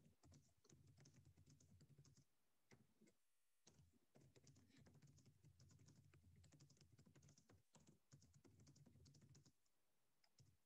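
Faint typing on a computer keyboard: quick, irregular keystrokes with a short pause about three seconds in.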